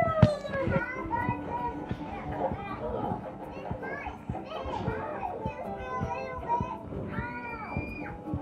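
Young children's voices chattering and squealing without clear words, with music in the background.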